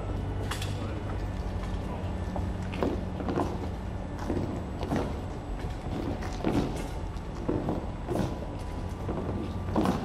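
Footsteps of a bearer party in boots climbing stone steps slowly under a coffin: irregular knocks and scuffs about once a second, over a steady low hum.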